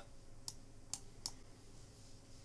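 Three faint clicks of a computer mouse, spaced under half a second apart, while the user adjusts and uses the brush tool in an image editor.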